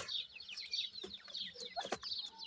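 Francolin (Sindhi teetar) chicks peeping: a run of short, high chirps that slide downward in pitch, with a couple of sharp taps near the end.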